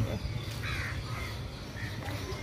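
A bird giving three short harsh calls, the first about half a second in and the loudest, over a steady low rumble.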